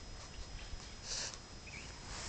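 Faint outdoor background noise in a pause between words, with a brief soft hiss a little past a second in.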